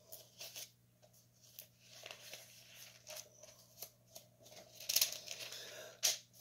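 Thin Bible pages being leafed through by hand: scattered soft rustles and flicks of paper, with a louder run of page turns about five seconds in.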